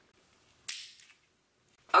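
Plastic cap of a Zipfizz drink-mix tube being opened: a short sharp crackling snap about two-thirds of a second in, followed by a second small click.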